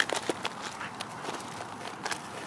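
Footsteps crunching on crusty snow and gravel: one sharp crunch right at the start, then scattered lighter steps.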